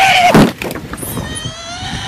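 A long shout cut off by a heavy thud about half a second in, as a person is tackled to the asphalt, then quieter with a faint drawn-out note.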